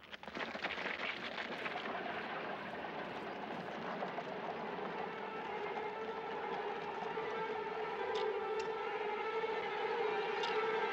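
Dense shuffle and clatter of a column of marching soldiers starts abruptly. A sustained musical tone swells beneath it and grows louder throughout.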